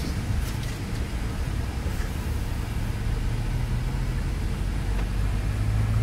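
Hyundai i20 N's turbocharged four-cylinder engine and road noise heard inside the cabin while driving: a steady low hum that grows stronger in the second half.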